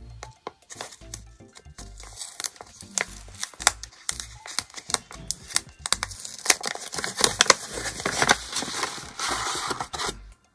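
Paper sticker packaging and sticker sheets being handled: crinkling, rustling and sharp light taps, busiest in the second half and ending in a longer rustle of paper sliding out. Soft background music with a low bass line plays underneath.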